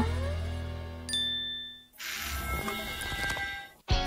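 A bright, bell-like chime dings once about a second in over background music that is fading out. Quieter music picks up again about two seconds in.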